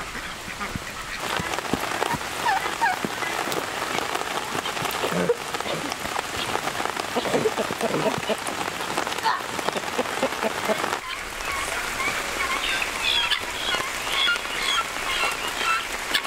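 Poultry calling repeatedly over a steady hiss of rain, with many short, high calls crowding together near the end.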